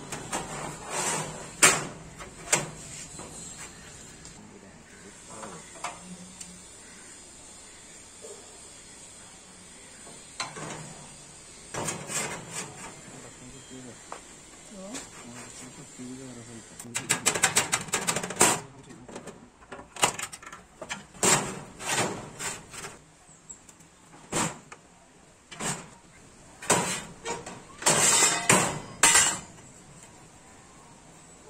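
Irregular sharp metal clanks and knocks as a steel sheet and the welded steel frame and clamps of a homemade sheet-metal bending machine are handled and worked. A quick run of rattling clicks comes a little past the middle.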